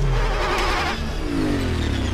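Designed engine sound of a glowing futuristic vehicle speeding past: a deep rumble under a rushing whoosh in the first second, then falling whines as it goes by.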